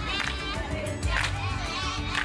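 Children's voices and laughter over background music with a steady low beat.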